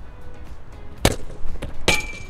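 A heavy football toe-punted with a sharp thud about a second in, then a louder metallic clang that rings briefly near the end.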